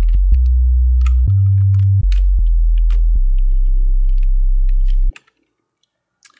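Pure sine-wave sub bass from FL Studio's Sytrus synth, pitched down, playing a short run of low notes with one higher note about a second in. It ends on a long held low note that cuts off about five seconds in. Faint clicks sound over it.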